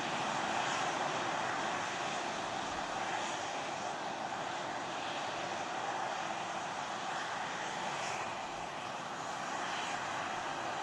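Steady rushing noise with no distinct events, picked up by an outdoor microphone on a rocket launch tower beside a caught booster.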